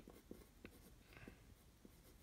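Faint scratching of a graphite pencil on paper as it sketches, with a few light, irregular strokes.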